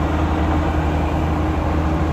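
A car driving on a winding mountain road, heard from inside the cabin: a steady low drone of engine and tyre noise, with a faint steady hum above it.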